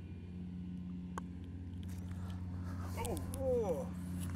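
Steady low hum of a distant small engine, with a single light click about a second in and faint voices near the end.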